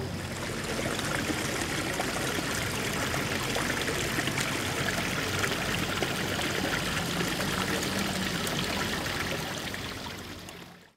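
Floodwater trickling and running steadily at a flooded basement window.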